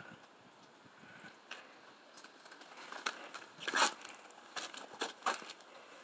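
Quiet scuffs and a few sharp clicks, with a louder rasping scrape a little after halfway: the wooden mesh door of an aviary being unlatched and swung open.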